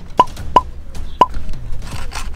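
Three short, hollow plops, each a quick upward pop in pitch. The first two come close together and the third follows after a longer gap.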